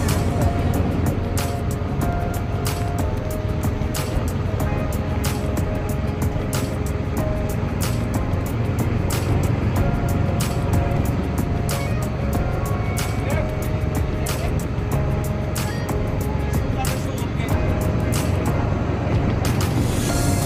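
A boat's engine runs steadily underway, with music playing over it.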